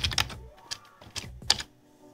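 Typing on a computer keyboard: a quick run of separate keystrokes, the loudest about one and a half seconds in, after which the typing stops.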